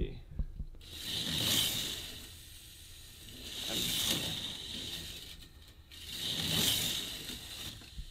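K'nex roller coaster train on 3D-printed ball-bearing wheel assemblies rolling along plastic K'nex track. It makes a rattling rolling noise that swells and fades three times, about every two and a half seconds.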